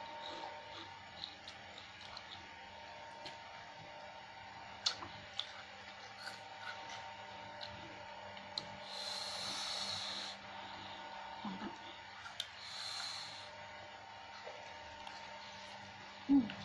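Eating sounds: chewing, with scattered light clicks of a metal spoon in a plastic bowl, and two breathy rushes about a second long, around nine and twelve seconds in. A steady faint hum runs underneath.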